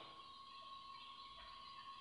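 Near silence: faint recording hiss with a thin, steady high tone underneath.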